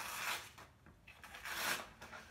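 Sharp knife blade slicing through a sheet of paper twice, each cut a short swish. The clean, easy cut is the sign of a keen edge, freshly honed on an Arkansas oilstone.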